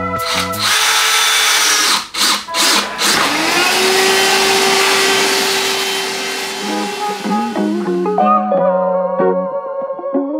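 Cordless drill running, first in a few short bursts and then in one long steady run with a steady motor whine, stopping about eight seconds in; background music plays underneath.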